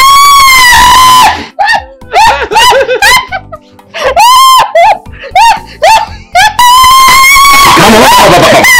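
Women screaming and laughing, very loud and shrill. There are long held shrieks at the start, near the middle and near the end, with choppy bursts of cackling laughter between them.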